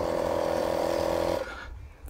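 Air compressor motor running with a steady hum, then cutting off about one and a half seconds in.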